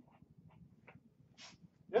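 Dry-erase marker squeaking on a whiteboard in a few short strokes as figures are written, followed by a brief hiss.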